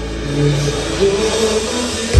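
Live band building up: a drum kit fill with cymbals ringing and swelling over sustained bass and guitar notes, getting fuller toward the end.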